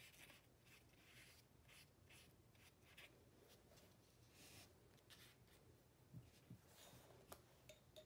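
Faint, quick strokes of a watercolour paintbrush on paper, close to silence overall. A couple of soft knocks follow about six seconds in as glass water jars are moved on the table.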